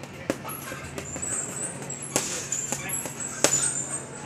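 Boxing gloves punching a heavy bag: four hits, the loudest near the end, with short high-pitched squeaks in between.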